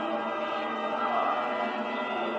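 Music of choir-like voices holding long, steady notes.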